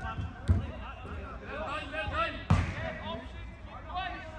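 Two sharp thuds of a football being kicked, about half a second in and again about two and a half seconds in, with players shouting across the pitch.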